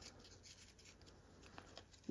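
Near silence, with faint rubbing of glossy trading cards being slid through the hands and a couple of light clicks near the end.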